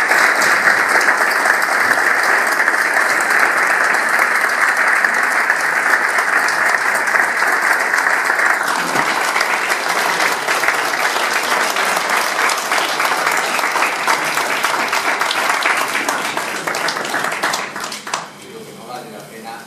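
A seated audience of about a hundred people applauding steadily, dying away near the end.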